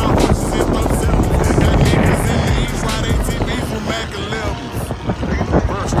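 Rap music with vocals playing over a steady low rumble of boat engines and wind.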